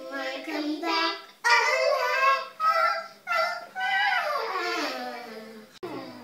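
A young girl singing without clear words in a high voice, holding and bending notes, with one long downward slide near the end. A sharp click sounds just before it stops.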